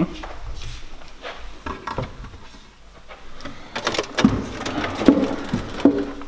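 Scattered light knocks and clicks of handling in a kitchen, quieter in the middle, with a quick run of sharper clicks from about four seconds in.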